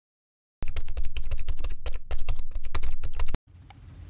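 Computer keyboard typing, a quick run of key clicks lasting about three seconds, as if a query is typed into a search box. Just before the end, a faint low swell begins.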